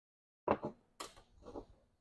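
A piston from a Rotax 582 engine being set down on a workbench: a few short knocks and clatters about half a second, a second and a second and a half in.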